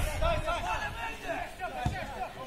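Several people's voices talking and calling out over one another, the voices of players and onlookers at an amateur football match, over a low rumble, with one short thump near the end.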